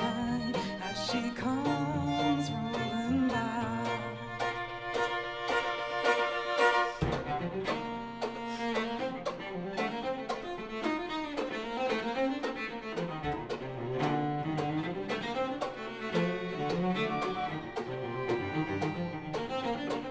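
String quartet of two violins, viola and cello playing a bowed instrumental passage of a folk-song arrangement, the cello holding a low sustained note for the first several seconds before the texture shifts about seven seconds in.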